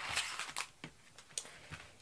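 A sheet of metal layering circle dies being slid onto a craft mat: a brief rustling slide, then a few light clicks and taps as the dies and paper circles are handled.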